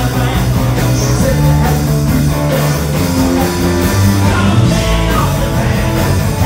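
Live rock band playing rock and roll with electric guitars and drums, loud and steady throughout.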